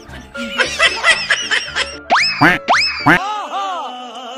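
Upbeat comedy background music with two quick rising pitch sweeps, cartoon-style sound effects, about two seconds in. About three seconds in the music's bass drops out abruptly, leaving wavering rise-and-fall tones.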